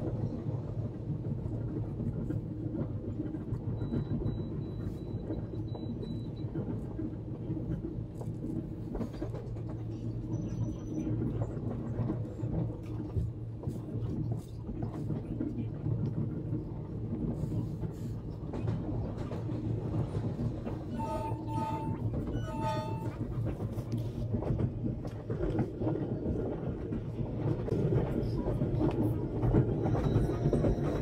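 Long Island Rail Road commuter train running on the rails, heard from inside the car as a steady low rumble. About two-thirds through, a horn sounds twice briefly.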